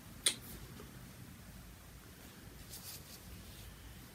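Quiet room with faint rustling of cross-stitch fabric being handled, and one short sharp click about a quarter second in.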